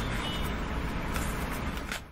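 Steady low rumble and hiss of background noise, with a few faint brief rustles.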